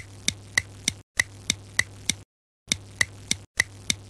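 Clock-ticking sound effect marking a time skip: crisp ticks about three a second, each with a short high ring. The ticking cuts out into dead silence twice, for a moment a little past one second in and for about half a second a little past two seconds in.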